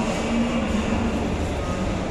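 Steady mechanical rumble with a low hum from an inclined moving walkway (travelator) running, carrying people and a shopping trolley.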